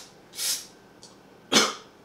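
A man coughs: a breathy huff about half a second in, then a sharper, louder cough about a second and a half in.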